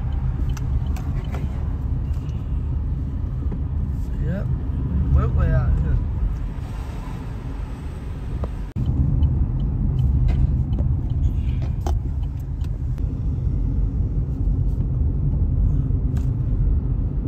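Steady low rumble of a car driving, engine and road noise heard from inside the cabin, with a sudden brief dropout a little past halfway.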